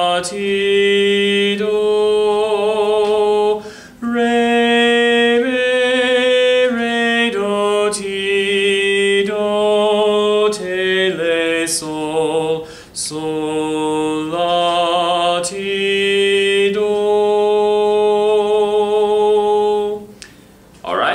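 A man singing a sight-singing melody alone on solfège syllables, a G minor tune in the melodic minor mode, in held notes that step down and back up. He pauses briefly for breath about four seconds in and again near thirteen seconds.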